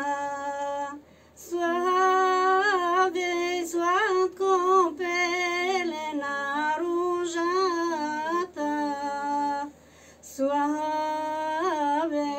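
A woman singing a folk song solo and unaccompanied, in long held notes with ornamented turns and vibrato, pausing twice for breath.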